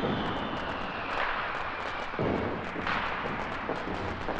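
Fireworks going off: a steady crackle and hiss from fountain fireworks, with several sharp bangs about a second apart and a thin whistle falling in pitch during the first second.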